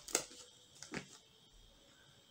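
A few faint, short paper rustles and clicks, about three in the first second, as pages are handled.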